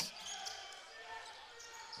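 Faint live court sound of a college basketball game in a mostly empty arena: a basketball being dribbled on the hardwood floor amid low background noise of the hall.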